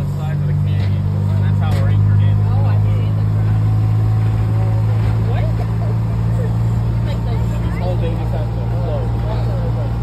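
Small vehicle engine running steadily as a low hum, with people talking faintly over it.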